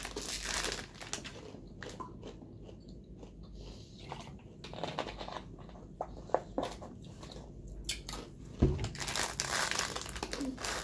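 Thin, crunchy snack sticks being bitten and chewed, with sharp snapping crunches scattered through. Near the end a plastic snack packet rustles loudly as it is handled.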